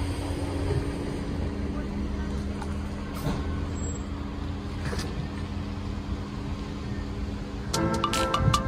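Steady low hum of a motor vehicle engine running nearby on the street. Just before the end, background music with light struck, marimba-like notes comes in.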